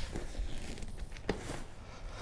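Fabric rustling and a couple of soft knocks as a stroller's seat unit is picked up and carried.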